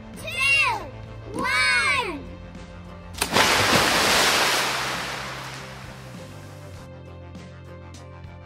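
A Barbie doll dropped into a backyard swimming pool: one loud splash about three seconds in, fading away over the next few seconds. Before it come two short high-pitched shouts from the girls, over steady background music.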